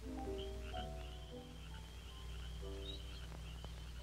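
A few soft, slow notes of the film's orchestral score over a steady high-pitched chirring trill, the night-creature sound effect of an old animated cartoon. The music fades out about three seconds in, and the trill carries on with a faint low hum underneath.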